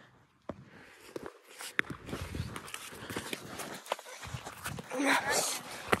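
Footsteps and rustling over dry leaves and grass, with scattered light knocks. A louder rustle close to the microphone comes near the end.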